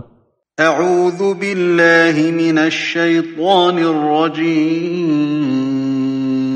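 A man reciting the Quran in Arabic in a slow melodic chant, with long held, ornamented notes. It begins about half a second in, after a brief silence.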